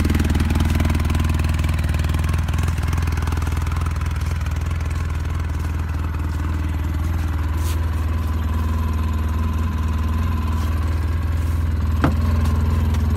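Polaris RZR 800 side-by-side's twin-cylinder engine idling steadily, its engine freshly rebuilt by the factory.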